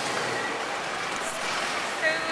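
Busy city street traffic noise, a steady rush of passing buses and cars.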